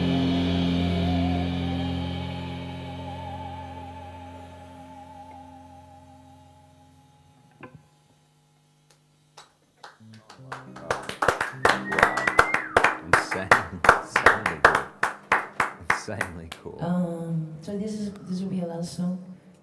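A band's final chord rings out, one note wavering with vibrato, and fades away to silence about eight seconds in. A couple of seconds later a few people clap for several seconds.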